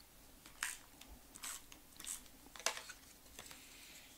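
A handful of short, faint crinkles and rustles of patterned paper being handled and laid onto a scrapbook page, the loudest a little past halfway.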